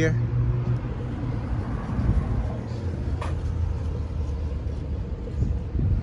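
Low, steady rumble of city street traffic, a vehicle engine running close by, with a single short click about three seconds in.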